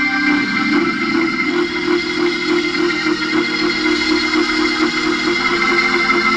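Church organ holding sustained chords over a quick, steady rhythmic beat, loud and continuous.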